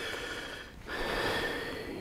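A man breathing noisily through his nose close to the microphone: two breaths, the second a little longer, with a faint nasal whistle.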